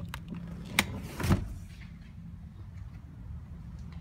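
Third-row seatback of a 2016 Nissan Pathfinder being released and folded: a few latch clicks, a sharp click just under a second in, then a thump as the seatback comes down just after.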